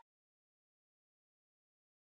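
Digital silence: the audio has cut off completely.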